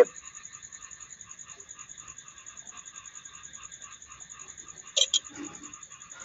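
A faint, steady chorus of animal calls in the background, pulsing about four times a second, with a brief sharp click about five seconds in.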